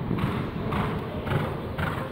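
Hoofbeats of a horse cantering on soft sand arena footing, with strides about every half second, over a low rumble.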